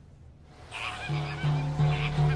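Birds honking in a flock with goose-like calls over background music. The honking comes in about a second in, after a brief near-quiet moment.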